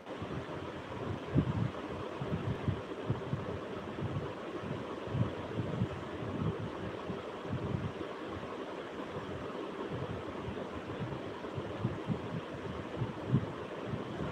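Steady background hiss with many soft, irregular low thumps and flutters, the kind of muffled noise picked up when something brushes or buffets a phone's microphone.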